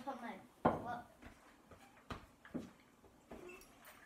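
A few light knocks and handling noises, with a trailing word of speech at the start and faint murmurs between.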